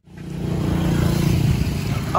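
A vehicle engine running, a low rumble that fades in from silence over about half a second and then holds steady.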